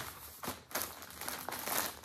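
Plastic bag crinkling and rustling in a few short spells as a yarn kit inside it is picked up and handled.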